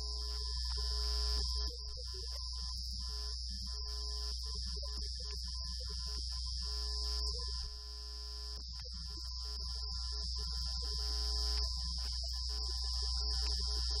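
Steady low electrical hum and a constant high-pitched whine on a room recording, with short broken tones in the mid range.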